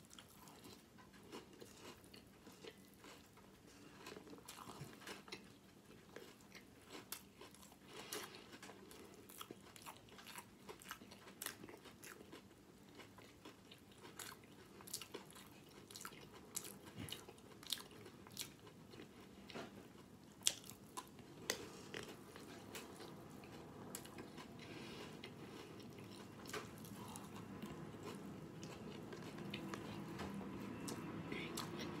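Faint sounds of a person eating cereal soaked in water: chewing and crunching with many irregular sharp clicks.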